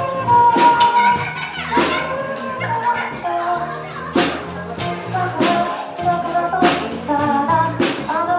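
Live pop band playing a song: female lead vocal over drum kit, electric bass, guitar and keyboard, with a steady beat.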